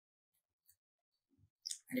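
Near silence broken by a couple of faint, short clicks, then a man's voice starts near the end.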